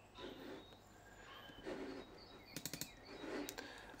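Quiet room sound with a few faint sharp clicks about two and a half seconds in and again near the end, and faint short high chirps in the background.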